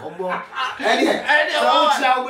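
A voice talking with a chuckle.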